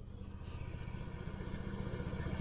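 Car engine idling, a steady low rapid throb heard from inside the cabin.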